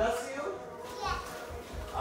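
Indistinct children's voices in the background, chattering and playing, with low rumbles from the phone being handled with its lens covered.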